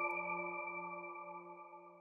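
Ringing tail of a chime-like musical sting: several sustained bell-like tones fading away evenly and dying out near the end.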